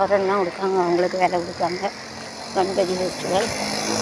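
A person talking, with street traffic behind.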